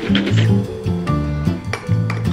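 Background music with a repeating bass line, over light clinks of a metal spoon against a glass coffee mug as milky coffee is stirred.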